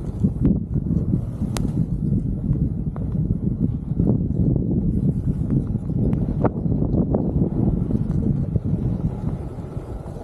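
Wind buffeting a helmet-mounted camera's microphone as the skier moves down a groomed ski run: a steady low rumble, with a few faint sharp clicks scattered through it.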